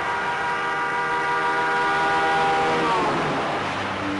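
A loud, sustained horn-like chord of several pitches that slides downward and dies away about three seconds in.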